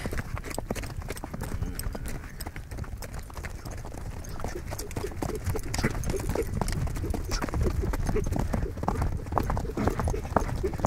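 A ridden horse's hooves clip-clopping on the ground in a continuous gait, with short low vocal sounds in the second half.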